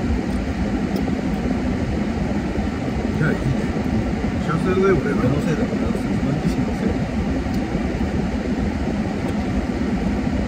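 Steady hum of an idling car with its air conditioning running, heard from inside the cabin, with a few quiet spoken words over it.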